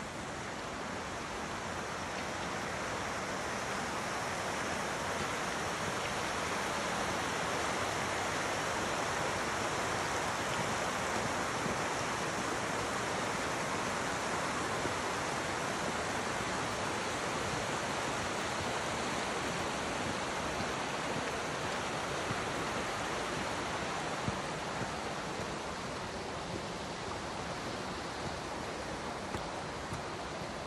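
Steady rushing of a creek cascading over rocks, growing louder over the first several seconds and easing a little near the end.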